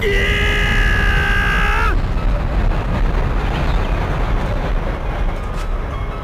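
Drama soundtrack effects: a single held tone for about two seconds, bending down as it cuts off, then a steady rumbling noise.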